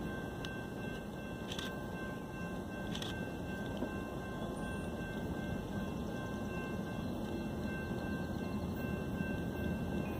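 Steady low outdoor rumble with a few faint, steady high tones above it and no distinct events.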